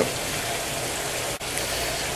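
Steady hissing background noise with no distinct events, broken by a brief dropout a little past halfway that sounds like a cut in the recording.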